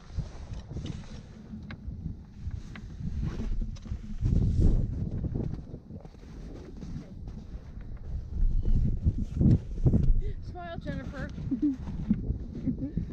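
Wind buffeting the camera microphone in irregular low gusts, strongest about four seconds in and again near the end, with voices briefly heard about ten seconds in.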